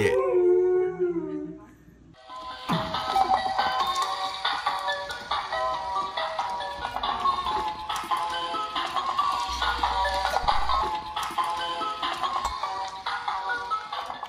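A baby vocalizing with rising and falling pitch for about two seconds. Then, after a short pause, a tune plays for the rest of the time.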